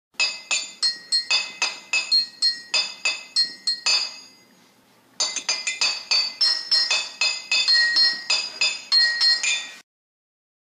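Intro jingle made of quick struck chime notes at changing pitches, about four a second, each ringing briefly. The notes pause for about a second around the middle, start again, and cut off just before the end.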